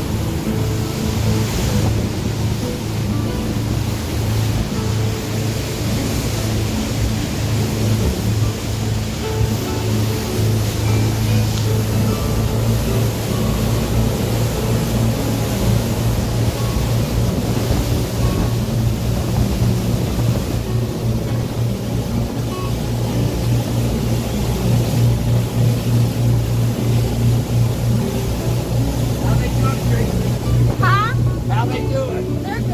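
Motorboat under way at speed: a steady low engine drone with the rush of water churned up in its wake.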